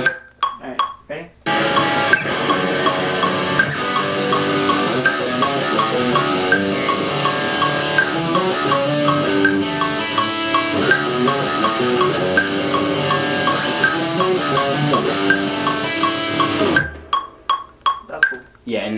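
Electric guitar played over a rock band track with a steady beat, starting about a second and a half in and stopping suddenly near the end.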